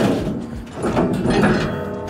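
Steel pallet fork tines clanking and sliding against a steel loader bucket as they are shifted by hand, with a loud knock right at the start.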